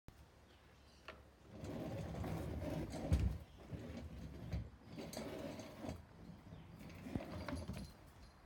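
Domestic cat making low, rough vocal sounds in several stretches of about a second each, with short breaks between them.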